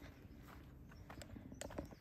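Quiet outdoor background with a few faint, scattered clicks.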